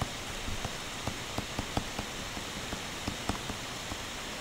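Faint, irregular taps and scratches of a stylus writing on a tablet screen, over a steady hiss.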